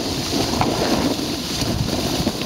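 Steady wind rush and buffeting on the microphone of a camera moving down a ski slope, mixed with the hiss of sliding over packed snow.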